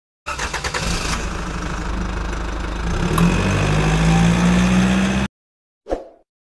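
A car engine starts, with a quick run of pulses as it catches, then runs and revs up, growing louder about three seconds in before cutting off abruptly after about five seconds. A short ding follows near the end.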